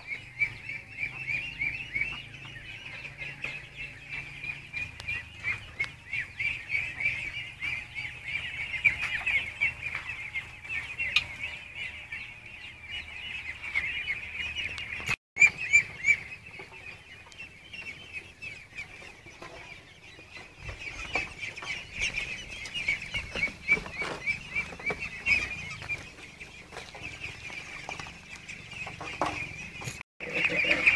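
A flock of farm poultry calling continuously: a dense, high-pitched chattering chorus of many overlapping calls, broken off for an instant about halfway through.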